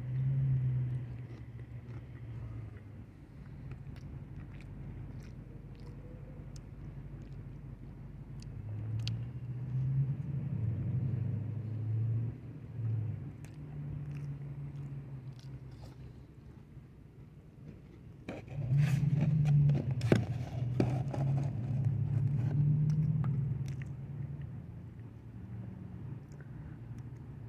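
A person chewing a soft cookie close to the microphone. Low, muffled chewing comes and goes in stretches, with scattered small clicks.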